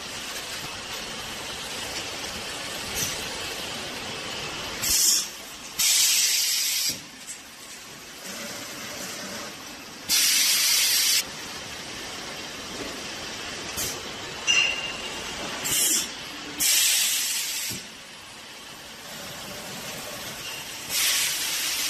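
Conveyor-belt vacuum packing machine running with a steady hum, broken by about five sharp hisses of air, the longer ones lasting about a second, as the vacuum chamber vents at the end of each packing cycle.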